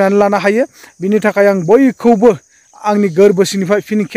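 A man talking steadily in Bodo, in phrases with short pauses. Behind him runs a steady, high-pitched insect trill.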